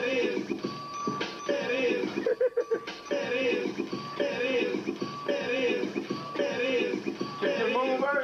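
DJ mix of an electronic track with auto-tuned, synthetic-sounding vocals and a phrase that repeats about once a second. A little over two seconds in, the music breaks into a quick half-second stutter of choppy stabs before the track carries on.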